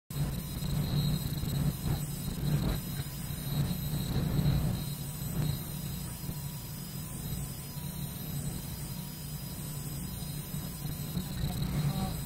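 Steady low hum of office background noise, with faint thin high-pitched electronic tones running through it.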